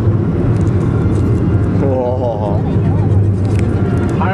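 Steady low rumble of a car on the road, heard from inside the cabin, with a voice speaking briefly about two seconds in.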